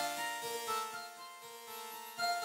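Parsec 2 spectral synthesizer playing a looped pattern: held tones over a quick low pulsing line of about four or five short notes a second.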